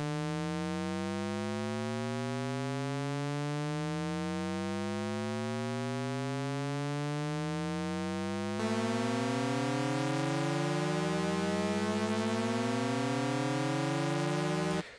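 Shepard tone from the Harmonic engine of the Arturia Pigments 4 software synthesizer: a stack of partials gliding steadily upward in pitch, each fading out as the next takes over as the fundamental, so it always sounds like it's ascending but never gets anywhere. About eight and a half seconds in it turns slightly louder and brighter.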